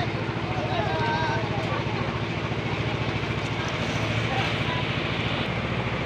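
A small engine running steadily with a fast, even pulse, under faint voices of people talking at a distance.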